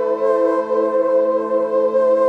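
Lap steel guitar strings sustained by a Vibraslide slide, ringing as a steady, smooth drone of several held notes with a slight waver in pitch.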